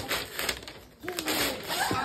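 Wrapping paper rustling and crinkling as a present is pulled open by hand. A short pitched voice sound with a bending pitch joins it about a second in.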